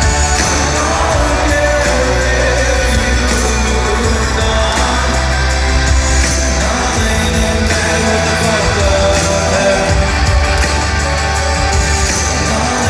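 Live concert music with a male singer's vocals over a heavy, steady bass-driven backing track, recorded from the crowd in a large hall.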